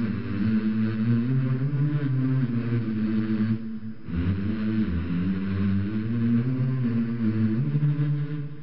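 Background music: a low, sustained chant-like drone in long slowly wavering phrases, with a brief break about three and a half seconds in.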